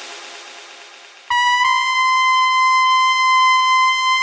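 Trance dance music: a hissing sweep fades away over the first second, then a single bright synthesizer note comes in suddenly and is held steady.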